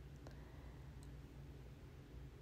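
Near silence: a low steady hum of room tone with a few faint clicks, about a second apart.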